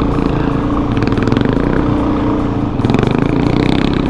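Suzuki DRZ400E's single-cylinder four-stroke engine running steadily under light throttle as the dirt bike rolls along a loose dirt trail, heard up close from the bike.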